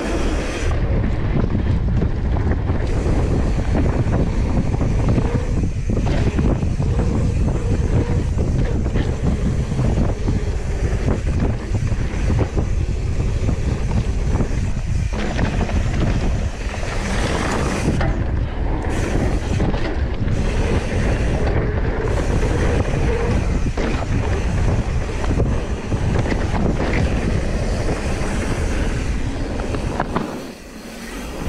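Wind rushing over the microphone of a mountain bike riding down a dirt bike-park trail, over a steady low rumble of the tyres and bike on the ground.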